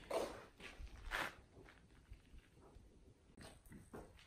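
Faint footsteps on a concrete floor as a person walks, with two more distinct steps in the first second and a half and lighter scuffs near the end.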